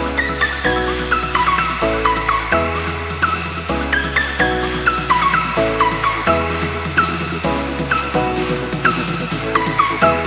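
Electronic dance music with a steady beat, a stepping bass line and a synth lead that slides up into its notes.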